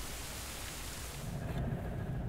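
A steady, even rushing noise. About one and a half seconds in, it gives way to the low rumble of a Citroën 2CV's air-cooled two-cylinder engine and road noise, heard from inside the cabin.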